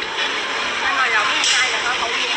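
A small child's high-pitched voice babbling without clear words over steady background noise.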